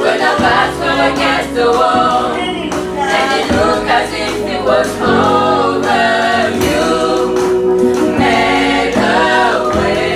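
Female vocal group singing a gospel song in harmony, with sustained, sliding vocal lines.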